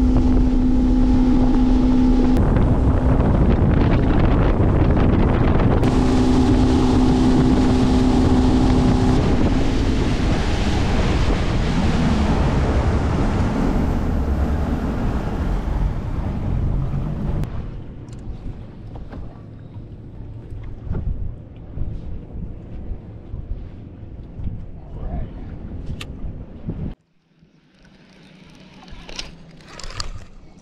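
Outboard motor running a boat across the lake at speed, with wind buffeting the microphone and water rushing past the hull; a steady engine whine comes and goes. About 17 seconds in the motor noise falls away, leaving quieter wind and water, and near the end the sound cuts off abruptly.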